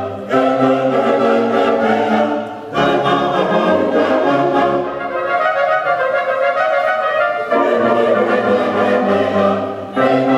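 Brass band of trumpets, euphoniums and tubas playing sustained chords in phrases with short breaks between them. The low bass drops out for a few seconds in the middle, then the full band comes back in.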